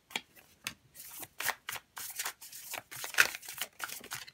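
A deck of tarot cards being shuffled by hand: a steady run of short, sharp card flicks and slaps, about three to four a second.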